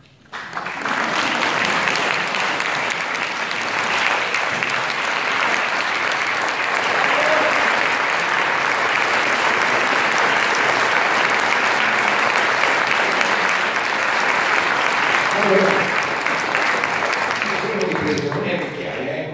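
Audience applause that breaks out suddenly about half a second in and goes on steadily, with a man's voice heard under it near the end.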